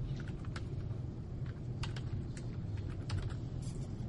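Typing on a computer keyboard: a quick, irregular run of keystrokes over a steady low hum.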